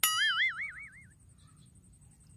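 A cartoon-style 'boing' sound effect: a sudden springy twang whose pitch wobbles quickly up and down, dying away after about a second.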